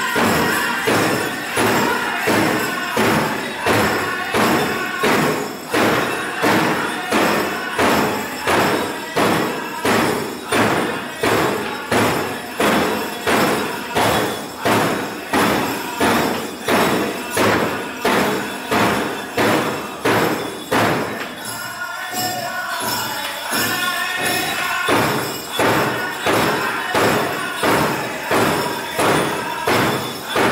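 Powwow drum struck in a steady beat, a little under two strokes a second, with singers' voices over it. Near the middle the drumming softens for a few seconds and the singing carries, then the full beat comes back.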